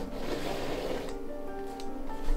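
Background music with held tones. In the first second, the soft swishing noise of a small foam paint roller being rolled through wet paint across canvas.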